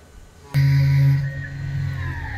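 Tormach PCNC 440 mill starting its cycle: a steady low electric hum with a faint higher whine comes on suddenly about half a second in and holds.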